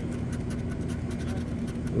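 Scratch-off lottery ticket being scratched: a quick, irregular run of short scratching strokes over a steady low hum.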